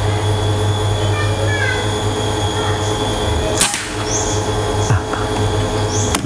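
A single shot from a Bocap FX Crown PCP air rifle: one sharp crack about three and a half seconds in, over a steady low hum.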